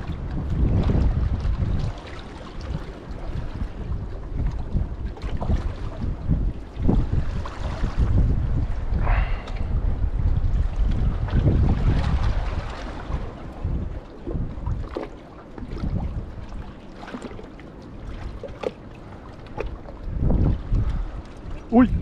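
Gusty wind buffeting a head-mounted action camera's microphone, a rumbling roar that rises and falls in gusts, with water lapping against shoreline rocks beneath it.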